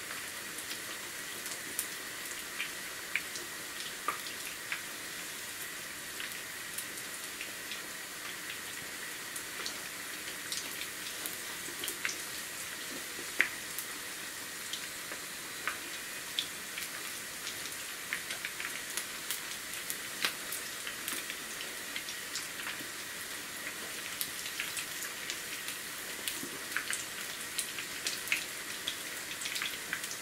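Gram-flour and potato pakoras deep-frying in hot oil in a frying pan: a steady sizzle with many small crackling pops.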